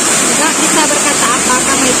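Heavy rain drumming on a corrugated metal roof: a steady, loud hiss, with voices talking underneath it.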